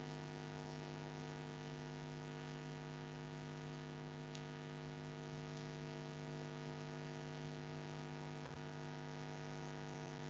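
Steady electrical mains hum: a constant buzzy drone made of a low tone with a stack of evenly spaced overtones above it, unchanging throughout.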